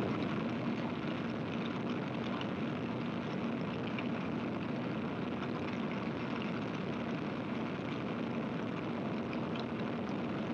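Rocketdyne F-1 liquid-fuel rocket engine in a full-duration static test firing: a steady, even roar.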